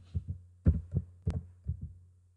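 Computer keyboard typing: about ten keystrokes in quick, uneven bursts, each a short dull click, over a steady low hum.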